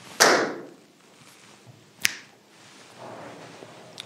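A sudden sharp swish about a quarter second in that fades over half a second, then a single short click about two seconds in.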